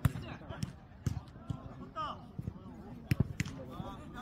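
A jokgu ball being kicked and striking the ground during a rally: several sharp thuds, with two close together about three seconds in. A player's short shout comes near the middle.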